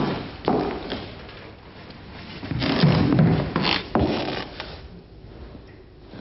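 Heeled footsteps on a wooden floor, a few separate knocks and thuds about half a second apart, with a heavier stretch of thumps about halfway through.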